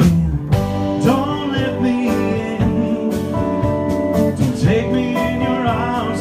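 Live band music: a man singing over keyboard and guitar, with a steady beat about twice a second.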